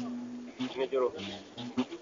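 Donso ngoni (hunter's harp) playing short, low, buzzing notes that start and stop several times, with faint voices underneath.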